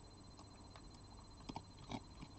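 Red fox eating from a plate: a few short, faint crunching chews, the loudest about one and a half seconds in and again near the end.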